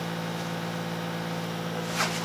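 A steady machine hum with a constant low tone, and a brief burst of noise near the end.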